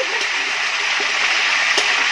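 Chicken wings deep-frying in woks of hot oil: a steady sizzle with a couple of small pops.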